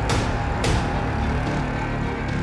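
Electronic theme music for a TV programme ident, opening with two sharp hits about half a second apart, then sustained tones.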